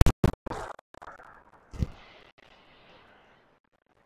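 A golf iron strikes the ball with a sharp crack at the very start, followed by a few more quick, sharp sounds in the first second and a fuller one near the two-second mark, then faint outdoor noise that fades away.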